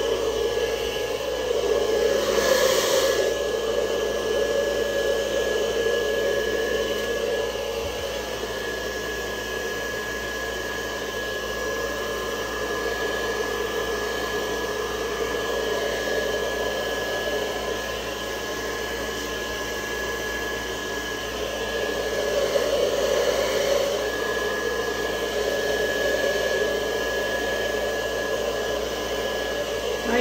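Handheld heat gun blowing steadily over wet acrylic pour paint, a constant motor-and-fan noise with a steady whine, swelling a little at times as it is moved about.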